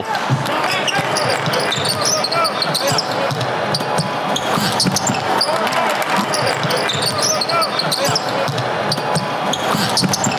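A basketball dribbled on a hardwood court during a game, with scattered sharp bounces over a steady din of arena noise and indistinct voices.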